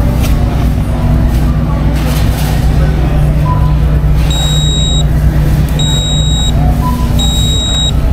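Self-checkout payment terminal beeping: three long, high, identical beeps about a second and a half apart in the second half, over the steady low hum of a large store.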